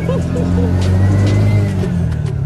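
Keke (auto-rickshaw) engine running steadily, rising a little in pitch around the middle and easing off near the end, with people's voices and background music over it.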